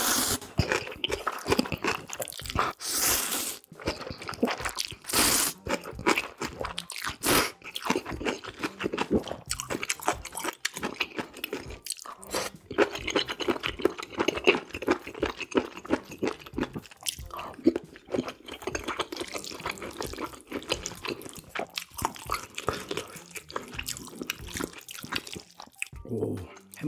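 Eating sounds of instant ramen noodles with napa cabbage kimchi: three long slurps in the first six seconds, then steady wet chewing and crunching.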